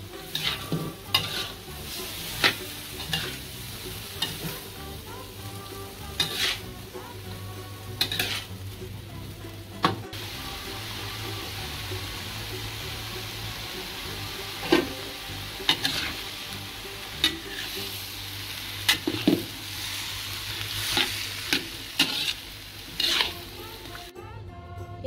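Chayote and carrot strips sizzling in a wok while a metal spatula stirs and tosses them, scraping and clinking against the pan at irregular intervals. About midway the strokes pause for a few seconds of plain sizzling.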